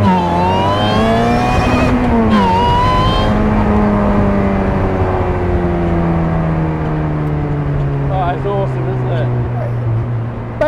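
The Ariel Atom 3.5's supercharged Honda 2.0-litre four-cylinder engine is accelerating hard, revving up to the rev limiter in second gear. The pitch drops sharply at an upshift about two seconds in and climbs again. The revs then fall slowly and steadily as the throttle is lifted.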